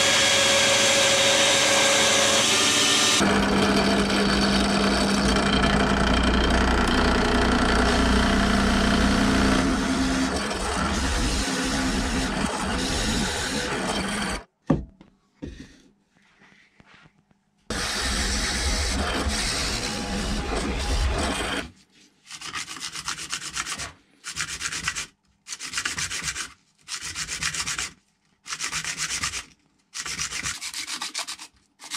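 Workshop power tools cutting and drilling a pen blank: a bandsaw cutting through a maple burl and resin blank, machine noise running on until about halfway, a sharp knock, a quiet gap, then a drill press running for a few seconds. From about two-thirds of the way in, a brass pen tube is rubbed on sandpaper in separate strokes about one every second and a half, scuffing the tube before it is glued in.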